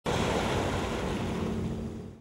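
Sea water washing and lapping, with wind: a steady rushing that begins abruptly and fades toward the end.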